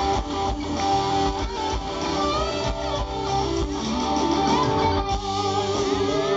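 Live rock band playing an instrumental passage: an electric guitar lead with bent, gliding notes over steady drums and bass.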